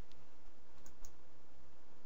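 A few faint computer-mouse clicks, three small clicks with the last two close together.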